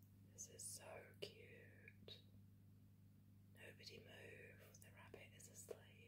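Faint whispered speech in two short phrases over a steady low hum.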